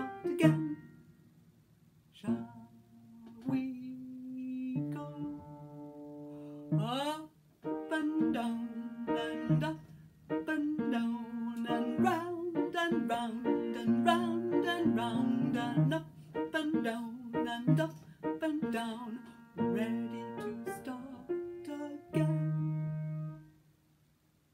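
A woman singing a slow children's movement song, with plucked-string accompaniment. A short pause comes about a second in, and a rising sung glide comes about seven seconds in.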